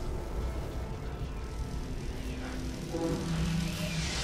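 A low, steady rumbling drone, with a few sustained tones coming in about three seconds in.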